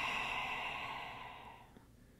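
A woman's slow, deliberate breath out through the mouth, a breathy sigh that fades away over about a second and a half.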